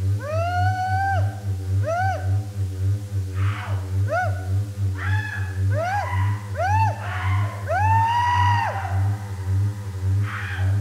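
Live power-electronics noise: a loud, throbbing low drone pulsing about twice a second, under a run of pitched, arching shrieks that glide up and fall away. The longest shriek comes about eight seconds in, with short bursts of hiss between them.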